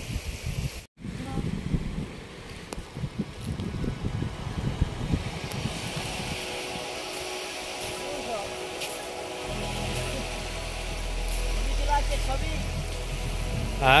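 Wind buffeting a phone microphone on an open beach: irregular gusty thuds, settling into a steady low rumble about two-thirds of the way through, with faint distant voices.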